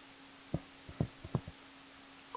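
Soft, low taps of a pen on a writing tablet as words are handwritten, about five of them in quick succession in the second half, over a faint steady hum.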